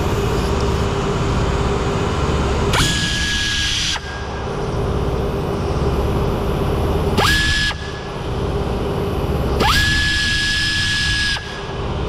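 A power ratchet runs in three bursts, short, shorter and about two seconds long, each a steady high whine with a hiss that starts and stops abruptly, spinning out the screws that hold the rear bumper. A steady low hum runs underneath.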